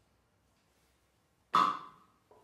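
Near silence, then about one and a half seconds in, a single sharp struck sound with a ringing pitched tone that fades quickly.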